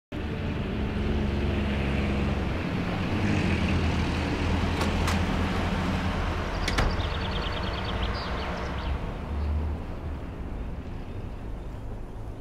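Road traffic: a steady low engine drone, with a few sharp clicks around the middle and a brief run of light ticks just after, easing off near the end.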